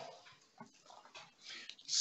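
Quiet pause between speakers: faint room tone, with a brief faint sound about a second and a half in.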